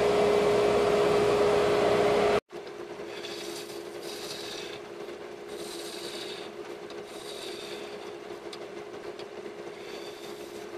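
Harbor Freight 34706 wood lathe running with a steady hum while a bowl gouge cuts the outside of a spinning olivewood bowl. The gouge scrapes in repeated passes of about a second each. A little over two seconds in, the sound drops suddenly to a quieter level and the passes carry on.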